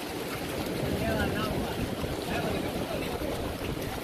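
Wind buffeting the microphone over the wash of surf at the shoreline, with faint voices in the background.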